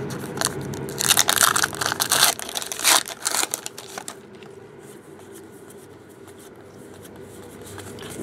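Foil wrapper of a trading card pack torn open and crinkled by hand, crackling for the first few seconds, then only faint rustling as the cards come out.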